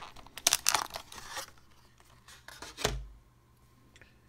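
Clear plastic clamshell packaging crackling and clicking as a laptop RAM module is pried out of it, followed by one dull knock near three seconds in.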